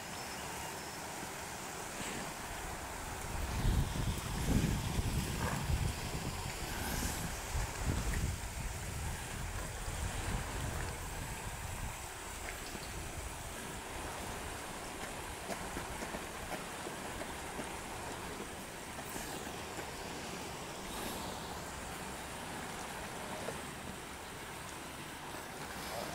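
Steady outdoor background hiss with low gusts of wind buffeting the microphone, strongest in the first half.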